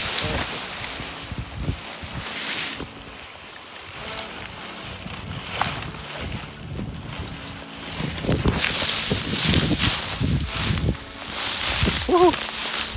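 Cloth rubbing and knocking against a phone's microphone as it is carried covered by a shirt, with wind noise; near the end a louder stretch of rustling as dry sugarcane leaves are handled.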